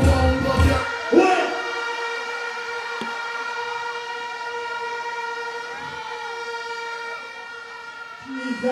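Stage sound-system music cuts off about a second in, leaving a steady electronic tone with overtones, a siren-like sound effect, that slowly fades over faint crowd noise. A short shout comes just after the music stops.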